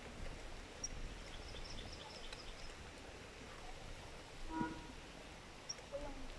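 Faint outdoor background of low, steady wind and riding noise, with a run of short high chirps about a second in and one brief pitched sound about two-thirds of the way through.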